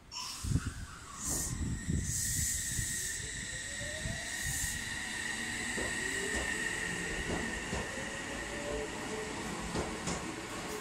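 Electric commuter train pulling out of a station. Its brakes release with several short air hisses, then the traction motor whine climbs slowly in pitch as the train gathers speed.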